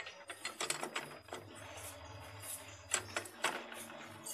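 A socket wrench ratcheting on the nut of a scooter's CVT clutch: a quick run of metallic clicks, then two more clicks near the end.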